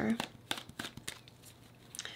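A deck of tarot cards being shuffled by hand: a quick run of soft clicks and slaps of card against card in the first second, thinning out and fading, with one faint tick near the end.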